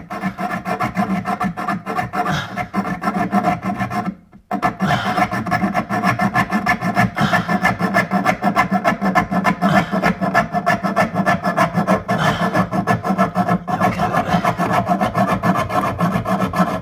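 Hacksaw with a fresh blade cutting through 15 mm copper water pipe in quick back-and-forth strokes. The sawing pauses briefly about four seconds in, then carries on.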